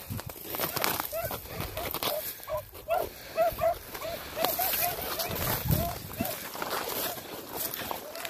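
Hunting hounds barking in a quick run of short yelps, about four a second, as they run a rabbit. Dry brush crackles close by as it is pushed through.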